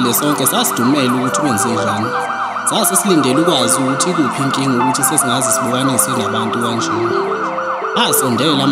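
Electronic emergency siren on a fast yelp, its pitch rising and falling about four times a second. Lower held and gliding tones sit beneath it.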